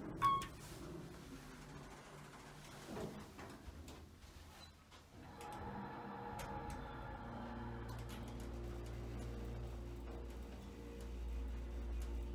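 Otis hydraulic elevator: a brief click right at the start, then about five seconds in the hydraulic pump motor starts and runs with a steady hum and low rumble as the car travels up.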